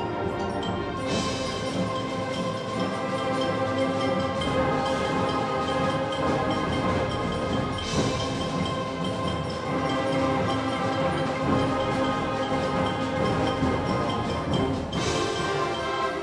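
Large middle school concert band playing: woodwinds and brass holding full chords over percussion, with louder accents about a second in, about eight seconds in and just before the end.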